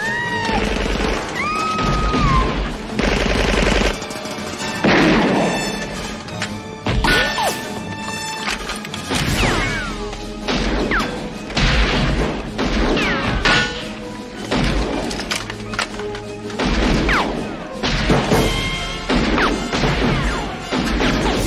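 Film soundtrack of a shootout: music running under repeated gunshots, thuds and crashes.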